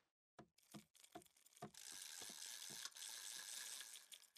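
Faint sounds of a fish being reeled in on a rod: scattered light clicks from the reel, then a soft hiss lasting about two seconds.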